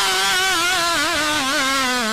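A man's voice singing a long, drawn-out melodic line into a microphone, sustained with wavering, ornamented turns in pitch.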